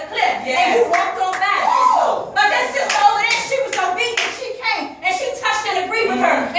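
A woman's raised, impassioned voice in short, rising and falling phrases, with hand claps among them.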